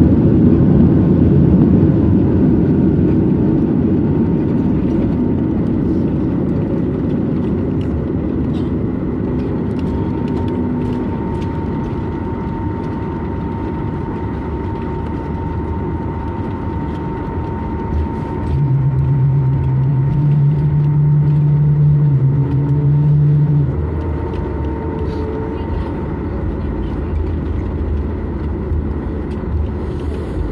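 Cabin noise of a Boeing 737 MAX 8 on its landing rollout: a loud rumble of engines and runway that dies away over the first dozen seconds as the airliner slows. In the second half a low steady hum comes up for about five seconds and then stops.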